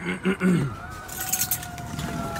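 A man clears his throat, followed by light rattling clicks of handling. Under it, a faint distant siren slowly wails.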